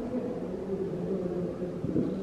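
Room tone with faint, indistinct voices murmuring in the background.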